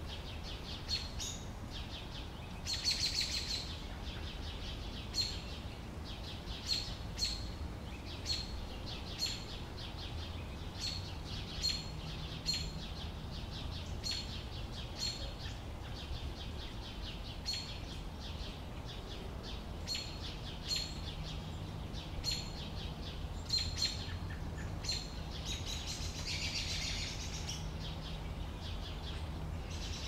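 Sparrows chirping: short, sharp chirps repeated about once a second, with a quicker run of chatter about three seconds in and again near the end. A low, steady rumble lies underneath throughout.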